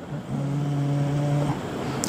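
A man's voice holding one steady, drawn-out hum or filler sound for about a second, its pitch unchanging, then trailing off.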